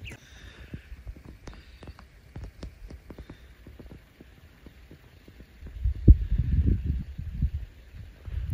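Faint, irregular clicks and ticks, then from about six seconds in a louder low rumble of wind buffeting the microphone for a second or two.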